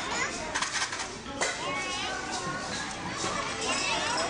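A crowd of young children chattering and calling out together in a school gym, many high voices overlapping. There is a single sharp knock about a second and a half in.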